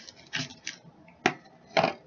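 Close-up eating sounds: a few short crunchy bursts from chewing crisp fried bacon, with a sharp click about a second and a quarter in.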